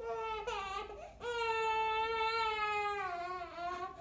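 A baby crying while stuck head-first in a woven storage bin: two short cries, then one long, drawn-out cry that dips in pitch at the end.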